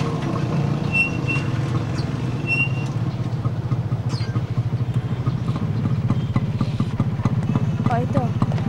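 A motor vehicle's engine running steadily, with a fast, even low pulse.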